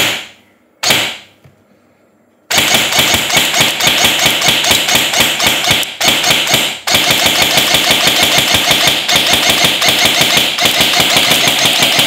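Stock ASG CZ Scorpion EVO3 airsoft electric gun firing into a chronograph: two single shots about a second apart, then long rapid full-auto bursts with a couple of brief breaks midway.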